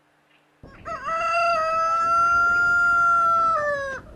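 A rooster crowing: one long call starting about a second in, held level and dropping in pitch as it ends.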